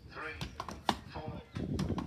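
Axes striking wooden logs in an underhand chop, a few sharp separate chops, the loudest about a second in and another near the end.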